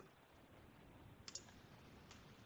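Near silence with a single faint click about a second and a half in, a computer mouse button clicked to advance a presentation slide.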